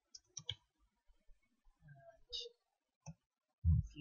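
Computer keyboard keys clicking in short, scattered runs as a few words are typed. A voice starts near the end.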